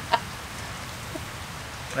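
Steady rain falling, an even hiss, with a short burst of laughter right at the start.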